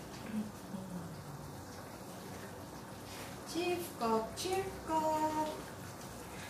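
A woman singing a few notes quietly to herself, the held notes coming in the second half.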